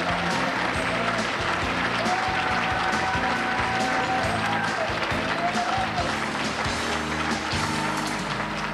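Audience applauding over instrumental music with held notes and a bass line.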